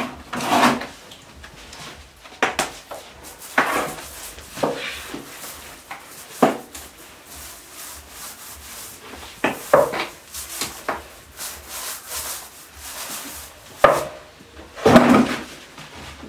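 Wallpaper glue being spread onto a painted wall: irregular rubbing and scraping strokes against the wall surface, the loudest near the end.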